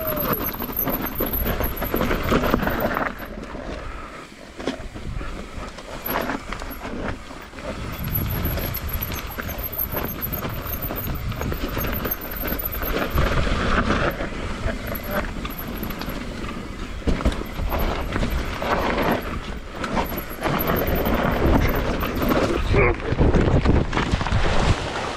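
Mountain bike descending rough, muddy singletrack: tyres and frame rattling over dirt, roots and rocks, with wind on the microphone and the rear freehub ticking fast in stretches while coasting. Near the end the rattle breaks off in a crash as the rider falls.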